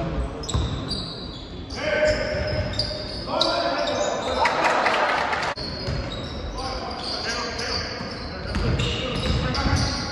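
Basketball game on a hardwood court in a reverberant gym: the ball bouncing, shoes squeaking and players calling out, with the loudest shouting between about two and five and a half seconds in.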